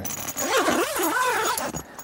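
Zip on a canvas swag's mesh fly screen being pulled closed: one continuous zipping run lasting about a second and a half.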